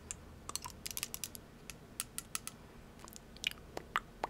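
Small sharp clicks and ticks from a glass serum dropper bottle being handled close to the microphone, coming in short irregular runs.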